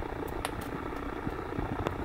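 A low, steady rumble with two faint clicks, one about half a second in and one near the end, as a hand grips and shifts a plastic test-kit case.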